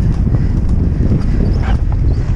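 Hoofbeats of a horse galloping on grass, heard from the saddle, under a loud, constant wind rumble on the microphone.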